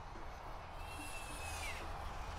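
Faint hum of a Diatone GT R349 micro FPV drone on 8-blade HQProp 76 mm propellers flying some way off, very quiet and fan-like. A thin high tone sets in about a second in and slides down near the end, over a low rumble.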